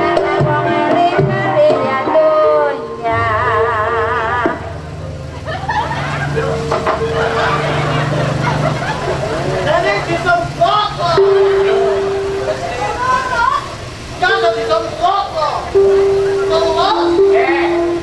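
Gamelan accompaniment of a ketoprak stage play, with held metallophone notes, under actors' voices speaking and calling out on stage.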